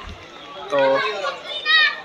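A man says one short word, then a child's high voice calls out briefly in the background near the end, over open-air crowd murmur.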